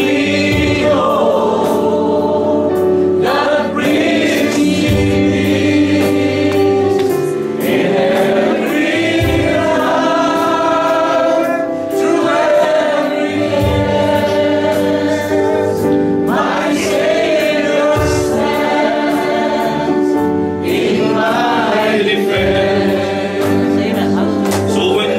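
A congregation singing a gospel worship song together in held, slow phrases over an instrumental accompaniment, with a deep bass note about every four to five seconds.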